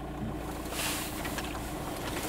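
Car engine and tyre noise heard inside the cabin on a dirt track, a steady low hum, with a brief hiss just under a second in.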